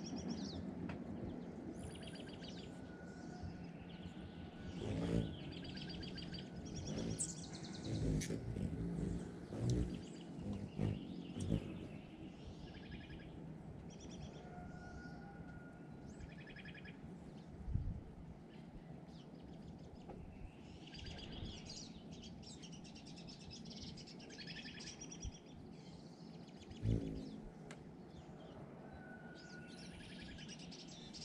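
Songbirds chirping and calling repeatedly in the background, with an occasional short whistled note. A few brief low thumps stand out as the loudest sounds.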